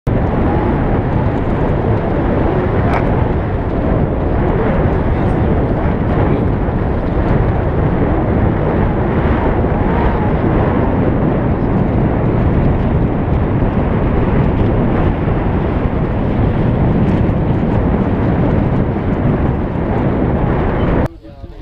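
Wind buffeting the microphone: a loud, steady, rumbling rush.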